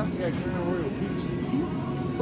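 Busy store ambience: a steady low hum with faint, indistinct voices.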